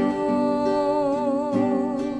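A Christian praise song: a single voice holds one long note with a gentle vibrato over acoustic guitar accompaniment.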